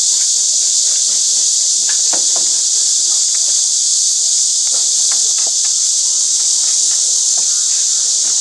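Loud, steady, high-pitched insect chorus that drones on without a break.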